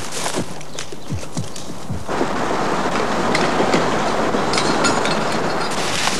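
People running through undergrowth: a dense, steady rustle of leaves and branches that starts suddenly about two seconds in, with scattered sharp clicks.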